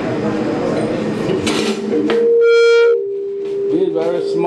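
Low background talk, then about two seconds in a loud steady howling tone sets in from the handheld microphone's PA feedback. It is loudest for about a second, then drops a little in pitch and level and holds on steadily.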